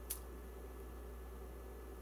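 A single sharp click just after the start, over a faint steady low hum and hiss.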